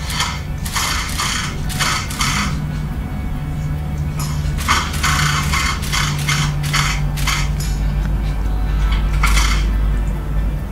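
Cordless drill/driver running in repeated short bursts as screws are driven through the back of a plastic cabinet into wall anchors, over steady background music.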